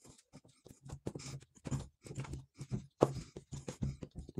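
Faint, irregular scraping, rustling and small taps as an aluminium heatsink is pressed and shifted by hand on a wet paper layout over a phenolic circuit board.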